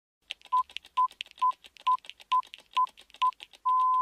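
Electronic countdown sound effect: seven short steady beeps at the same pitch, about two a second, then one longer beep near the end, over fast clicking ticks.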